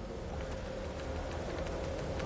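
Room tone of a lecture hall: a steady low hum with a faint steady higher tone, and a few faint clicks from the presenter's laptop keyboard.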